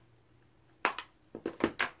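A few sharp clicks and knocks of makeup containers being handled: one about a second in, then a quick cluster of three or four near the end.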